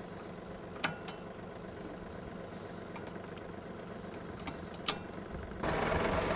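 John Deere 3039R compact tractor's diesel engine idling steadily. Two sharp clicks, one about a second in and one near the end, come from stop collars being snapped onto the mower's hydraulic lift cylinder.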